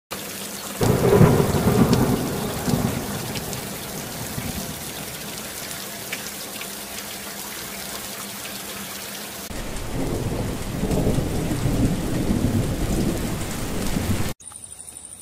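Heavy rain falling steadily with rolls of thunder: a loud rumble about a second in that fades over a couple of seconds, and another long rumble starting about two-thirds of the way through.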